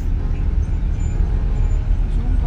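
Steady low rumble of an intercity coach bus on the move, engine and road noise heard from inside the passenger cabin.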